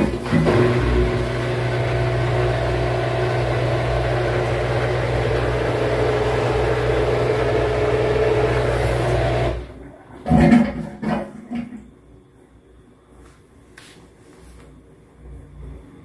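Front-loading washing machine's drain pump pumping out the wash water before the spin: a steady electric hum with watery churning, which cuts off suddenly about nine and a half seconds in. A short, quieter sound follows.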